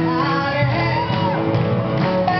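Live blues-rock band with electric guitars, keyboard and a saxophone horn section playing, with a singer's voice over them, in a large hall.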